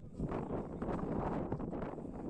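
Wind buffeting the microphone, with faint indistinct voices mixed in.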